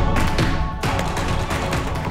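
Background music: sustained chords over a deep, dense bass, with a sharp percussive hit a little under a second in.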